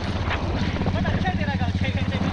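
Royal Enfield motorcycle engine running steadily at low road speed, a rapid even thumping.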